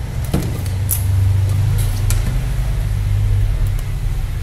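A steady low hum throughout, with a few light clicks and taps from handling the opened tablet's plastic casing.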